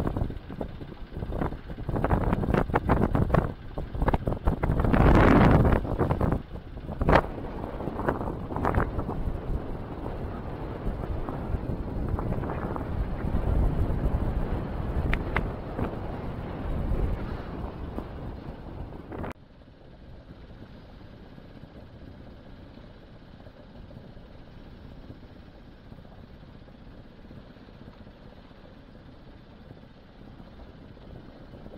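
Wind buffeting a camera microphone aboard a sailing yacht under way, loud and gusty with rapid buffeting. About two-thirds of the way through it drops suddenly to a quieter, steady rush.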